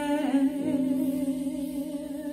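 A woman's voice holding a sung note with vibrato that softens into a hum, over steady, quiet musical accompaniment, in a slow gospel song.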